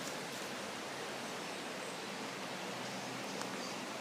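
Steady outdoor background hiss with a couple of faint short clicks, about a second in and near the end.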